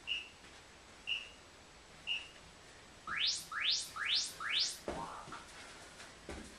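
Interval-timer app counting down to a Tabata work interval: three short high beeps a second apart, then four quick rising whoops signalling go. Near the end, thuds of feet landing on the floor as the jumping starts.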